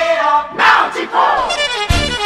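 Radio station sports jingle: voices shout and sing in pitch-gliding calls, then band music comes in with a sharp hit near the end.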